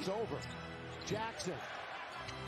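Faint NBA game broadcast audio: arena crowd and music under a commentator's voice, with a basketball being dribbled on the hardwood court.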